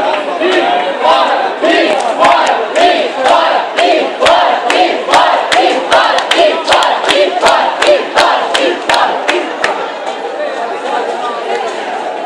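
A large crowd shouting and jeering, with many sharp cracks through it. The booing of a politician eases toward chatter near the end.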